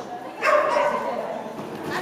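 A dog barking: one loud, drawn-out bark about half a second in.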